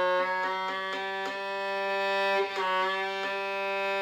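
Violin's open G string bowed in long sustained strokes while its tuning peg is turned, the pitch sagging slightly about two and a half seconds in and then settling as it is brought to the correct pitch.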